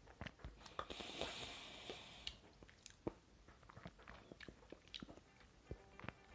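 Faint wet mouth clicks and lip smacks as a sip of whisky is worked around the mouth and tasted, with a soft hiss of breath about a second in.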